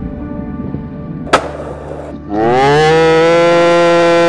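Background music with a single sharp skateboard impact about a second and a half in. From just past halfway there is a loud, long mooing call that rises briefly in pitch and then holds steady.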